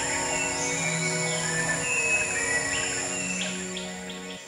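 Ambient music of long held notes laid over rainforest sound: short rising bird chirps and a steady high insect whine.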